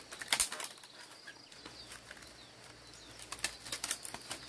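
Dry split-bamboo strips rustling and clicking against each other as they are threaded by hand into a woven mat, with a burst of clicks just after the start and another near the end, quieter in between.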